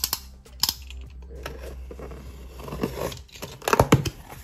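Utility knife slicing through the packing tape on a cardboard shipping box, with sharp clicks and a long scraping stretch. Near the end there is a louder burst of strokes as a box flap is pulled up.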